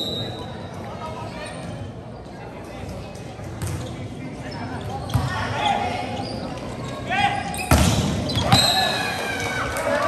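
Volleyball being struck during a rally: a few sharp ball hits, the loudest two close together near the end, echoing in a large hall. Players' shouts and crowd voices come up in the second half.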